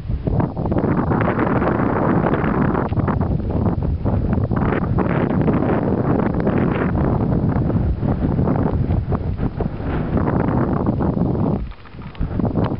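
Gusty wind buffeting the microphone: a loud, uneven rumbling rush that swells and falls, dropping away briefly near the end.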